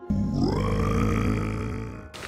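KitchenAid Artisan stand mixer motor starting up: its whine rises in pitch over about half a second, then runs steadily at high speed as the whisk beats egg whites, corn syrup and salt for marshmallow filling.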